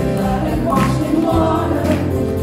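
Gospel praise song sung live by female voices in harmony, with acoustic guitar strums about once a second over a steady low bass line.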